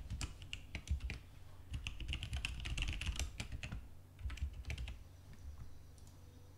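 Typing on a computer keyboard: a quick run of keystrokes, densest in the middle, stopping about five seconds in.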